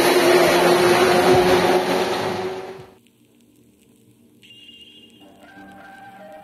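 Loud, steady racetrack noise with a low hum cuts off suddenly about three seconds in. After a moment of quiet, end-card music begins: a high chime, then a soft melody of a few notes.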